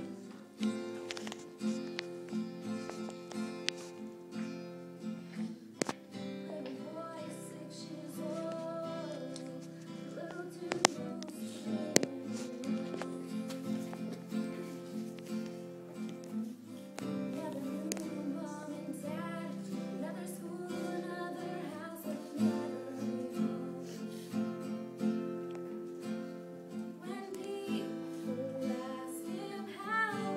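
A girl singing to her own acoustic guitar, strummed in a steady rhythm. Two sharp clicks stand out near the middle.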